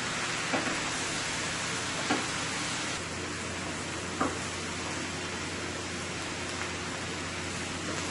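Fish and shredded cabbage sizzling steadily in a stainless steel skillet as they are stir-fried, with a few light knocks of a wooden spoon against the pan.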